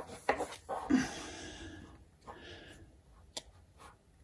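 Baseball trading cards being handled in the hands: a few short clicks and taps, and brief sliding rustles as the cards shift against each other and the fingers.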